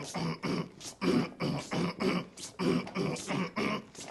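Young man's voice performing in a steady rhythm: short, gruff vocal bursts about twice a second, part of a rap performance.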